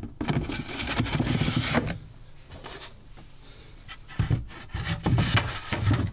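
Wooden bench panels being handled and set in place: a scraping rub for about two seconds, then a few dull knocks near the end.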